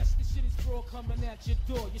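Hip hop track with a male rapped vocal over a heavy bass beat.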